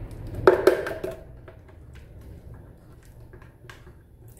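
Thick blended cassava purée being scraped out of a plastic blender jar with a spatula into a pot: a short knock and plop about half a second in, then faint scattered taps and scrapes.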